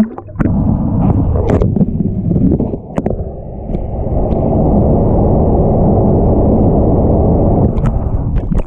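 Hot tub water churning, heard through a camera held underwater: a muffled, steady rushing of bubbles and jets. There is a sharp splash-like hit as the camera goes under, a few knocks in the first three seconds, and then an even rush from about halfway.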